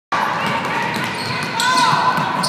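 Basketball game in a gym: crowd voices, a basketball bouncing on the hardwood court and sneakers squeaking, with a couple of short squeaks near the end.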